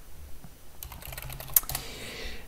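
Typing on a computer keyboard: a quick run of keystrokes entering a password, with one sharper keystroke near the end.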